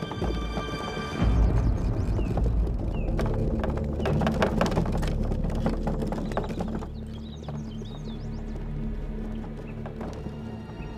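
Background music over the clip-clop of horses' hooves as a two-horse carriage rolls along a dirt track. The hoof steps are strongest in the middle few seconds and fade out toward the end.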